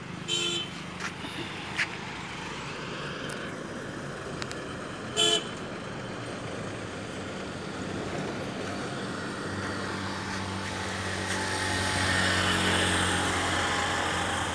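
Road traffic on a winding highway: two short vehicle horn toots, one near the start and one about five seconds in, over a steady traffic hum. Over the last few seconds a vehicle's engine grows louder as it passes.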